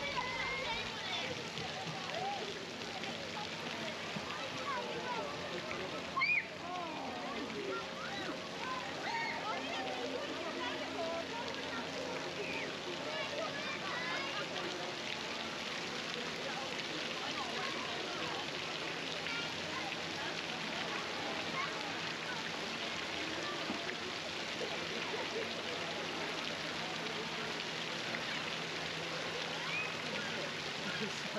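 Steady splashing and running water from a splash ride's pool and water jets, with many distant voices of riders and onlookers calling out. A low steady hum underlies the first half and stops about halfway through.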